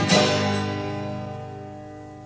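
A live band's final chord on guitar and bass, struck with a drum hit just after the start, then left to ring and fade away as the song ends.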